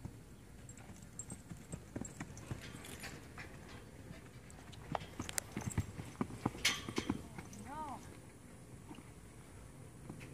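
Hoofbeats of a young horse cantering and bucking on arena sand on the lunge line, with a run of hard strikes about five to seven seconds in.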